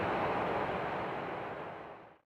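Distant jet noise of a departing Cessna Citation CJ3's twin turbofans, an even rushing noise that fades out toward the end.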